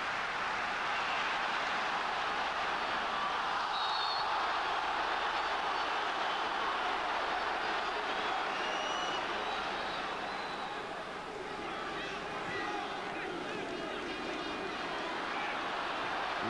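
Steady noise of a large football stadium crowd, easing a little about two-thirds of the way through.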